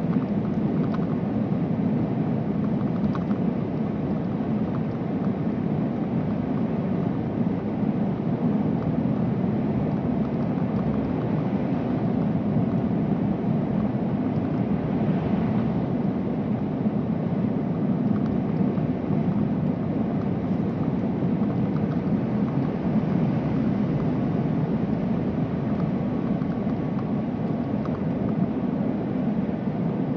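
Steady engine and road noise heard from inside a vehicle cruising through a road tunnel, an even low rumble with no change in speed.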